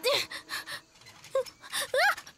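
A few short vocal cries and gasps, each rising and then falling in pitch, the clearest about a second and a half in and at the very end, with some rustling noise early on.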